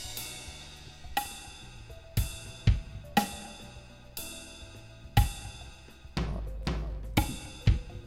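Notation-software drum-kit playback of a drum chop at a very slow 30 beats per minute. Single cymbal and hi-hat strikes land with snare and bass-drum notes about every half second to a second, each cymbal ringing out before the next hit.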